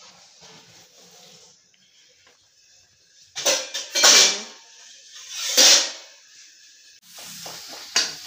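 Two loud clattering bursts of steel kitchen utensils being handled, about halfway through, each lasting around half a second. Near the end, food sizzling in a pan on the gas stove as a steel ladle stirs it.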